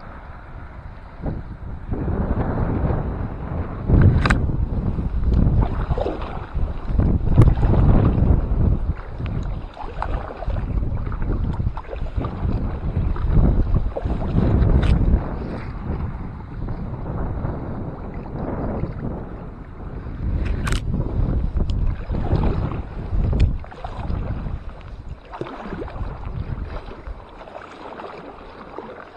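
Kayak paddle strokes in the sea: a splashing swish with each stroke, about every second or so, over wind rumbling on the microphone, with a few sharp clicks along the way.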